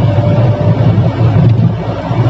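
Steady low rumble of a Mahindra Bolero's engine and road noise, heard inside the cabin while cruising on a highway.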